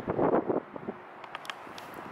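Wind buffeting the microphone in loud gusts for about the first half second, then a steady, quieter outdoor background hiss with a few faint clicks.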